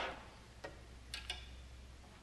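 Quiet room tone with a steady low hum and a few faint, short clicks; no instrument note is sounding.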